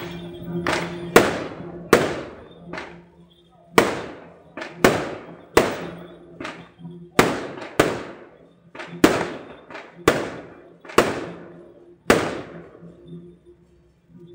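Firecrackers going off one at a time, about fifteen sharp bangs spaced roughly a second apart, each trailing off in an echo, over steady background music.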